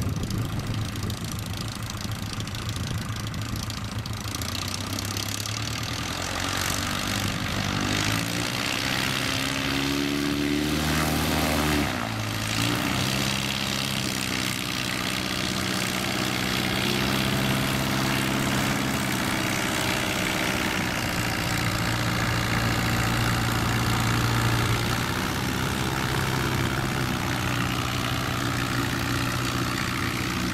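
Light plane's engine and propeller running as an American Legend J-3 Cub on amphibious floats taxis on grass. The engine pitch climbs from about eight seconds in, drops suddenly at about twelve seconds, then runs steadily.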